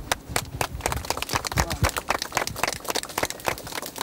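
A small crowd clapping: many irregular, overlapping hand claps, with a few voices underneath.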